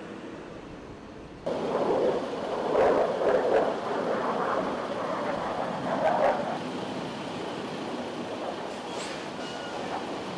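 A heavy truck on the road, its engine and road noise running steadily and jumping louder about a second and a half in, with rough swells in the noise.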